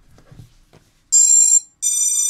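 Two electronic beeps from the quadcopter's brushless motors, driven by the ESC, about a second in. The second beep is higher than the first. They are the 'dü, dü' tones that sound once the ESC and flight controller recognise each other after power-up.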